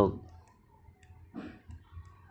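Faint light clicks of a stylus tapping on a tablet screen while handwriting, a few scattered ticks after a voice trails off at the start.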